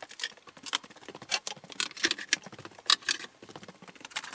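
Irregular clicks, knocks and rustles of someone moving about a workshop and handling tools and clamps. No steady motor or tool is running.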